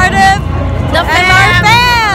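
A woman talking close to the microphone, drawing out a word in the second half, over steady crowd babble and street noise.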